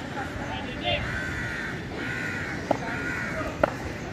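Crows cawing, a few harsh calls in a row, mixed with voices on the field. There are two short sharp clicks near the end.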